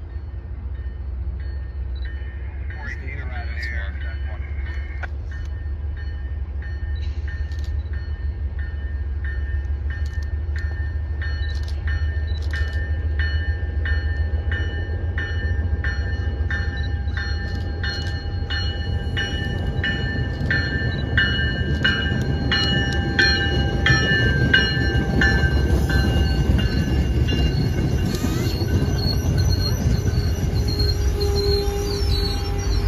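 An MBTA commuter rail train approaching and running past, with a bell ringing about twice a second that grows louder as it nears. Under it the train's rumble builds toward the end.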